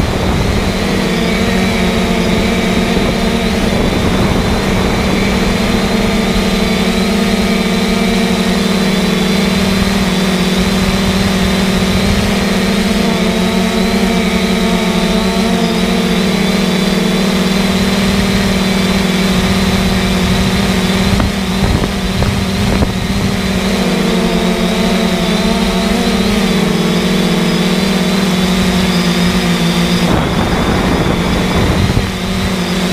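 A loud, steady engine-like drone with a thin high whine above it, holding the same pitch throughout.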